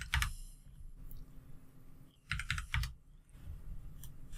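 Computer keyboard keys tapped in a quick run of about five strokes, a little past halfway, as a number is typed into a field, over a faint low hum.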